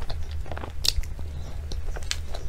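Close-miked chewing of a mouthful of cream cake topped with chocolate cookie crumbs: a run of small wet mouth clicks and crunches, with one sharper click about halfway through, over a steady low hum.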